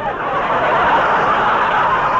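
Studio audience laughing, a loud, steady wash of many people's laughter that breaks out at the start.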